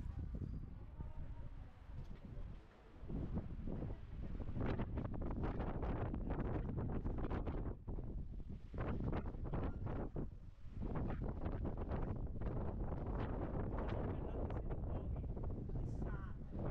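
Wind buffeting the microphone in uneven gusts, a low rumble that grows much stronger about three seconds in and stays strong with brief dips.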